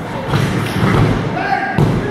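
Wrestlers' bodies hitting the ring mat with thuds, the sharpest one near the end, over shouting voices from the crowd.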